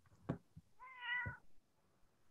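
A single faint meow, about half a second long, about a second in, as from a cat near an open microphone, preceded by a soft click.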